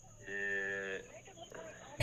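A man's voice over a phone line making one drawn-out, flat-pitched groan of under a second, played through the phone held up to the microphone: an unenthusiastic response.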